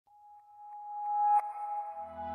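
Opening of a romantic Hindi film song: a single held note fades in and grows steadily louder, with a brief bright accent about one and a half seconds in.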